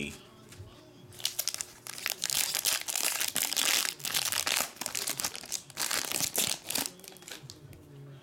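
Foil wrapper of a Panini Select soccer card pack crinkling as it is pulled open by hand, in dense rustling bursts from about a second in until near the end.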